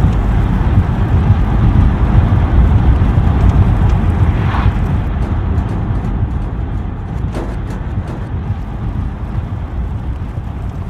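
Chevrolet Nova driving along a road: a loud, steady rumble of engine and road noise with wind buffeting the microphone, slowly fading.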